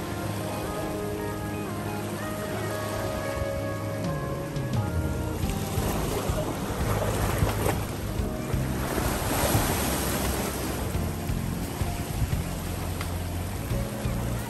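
Ocean surf washing over and breaking on rocks, the rushing noise swelling about five seconds in and staying strong. Background music with held notes plays underneath, clearest in the first few seconds.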